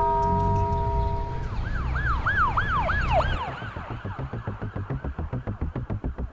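A cartoon police-siren sound effect wails up and down in quick arcs, about five times in a second and a half, after a bell-like chime fades out. A fast, even musical pulse follows over background music.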